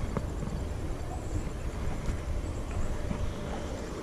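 Wind rumbling on the microphone, a steady low noise, with a couple of faint clicks as the fish and camera are handled.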